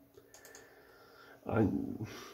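A few faint clicks at a computer during a quiet stretch, then a man's voice starts about a second and a half in.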